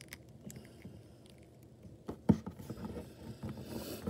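Hard plastic action figure being handled on a desk: faint scattered clicks, then a sharp knock just over two seconds in and a run of small clicks and rustling.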